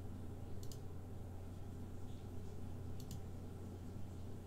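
Two computer mouse clicks, each a quick double click, one just over half a second in and another about three seconds in, over a steady low hum.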